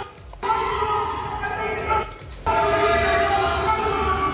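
Loud party music from an apartment in a high-rise complex, carrying across the enclosed courtyard between the towers and echoing off the buildings. It has held notes over a bass line and drops out briefly twice, at the start and about two seconds in.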